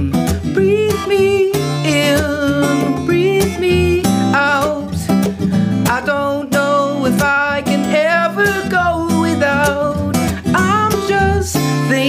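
A man singing a pop song over his own acoustic guitar, the voice rising and falling in sung phrases over steady guitar chords.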